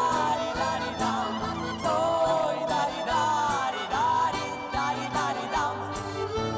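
Live Roma (Gypsy) folk-dance music from a small ensemble of violin, guitar and accordion. A wavering melody runs over a steady accompaniment, with a sharp accent about once a second.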